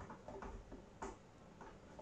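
A few faint clicks and taps of small plastic parts being handled and fitted together by hand.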